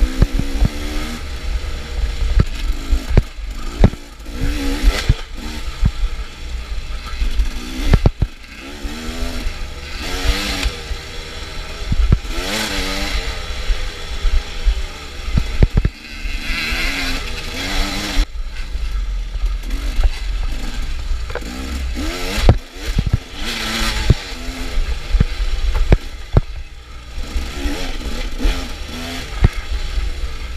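KTM dirt bike engine revving hard as it is ridden along a rough woods trail. The revs climb and drop again and again with the throttle and gear changes, and sharp knocks and clatter come from the bike crossing the rough ground.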